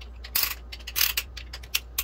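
Band-type piston ring compressor being cranked tight around a piston's rings: three short ratcheting clicks, spaced about half a second apart.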